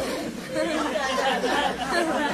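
A live audience's many voices laughing and chattering at once, the crowd's reaction to a joke's punchline.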